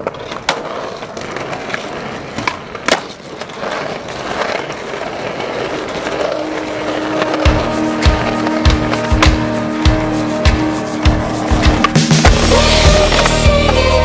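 Skateboard wheels rolling on concrete, with sharp clacks as the board is popped and landed. A music track with a heavy bass beat comes in about halfway and grows louder near the end.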